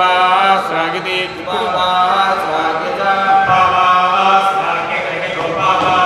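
Male voices reciting Vedic mantras in ghana pattern, the words repeated back and forth in a fixed order, in a steady sing-song on a few close notes.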